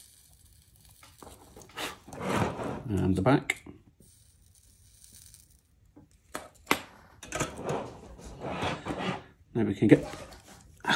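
Faint hiss of flux sizzling under a soldering iron as solder is melted onto a wire joint. A low, wordless voice comes and goes, with a few sharp clicks as tools are handled on the bench.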